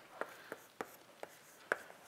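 Chalk on a blackboard while symbols are written: about five short, sharp taps and strokes spread over two seconds.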